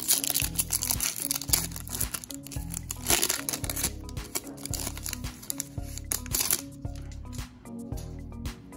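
Foil wrapper of a baseball card pack being torn open and crinkled, loudest in the first three seconds and again briefly later. Background music with a steady bass beat plays under it.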